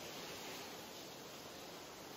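Faint, steady hiss of background noise with no distinct events.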